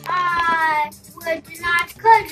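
A young girl's voice drawing out one long, sing-song note that falls slightly in pitch, then two short syllables, as she reads a rhyming picture book aloud.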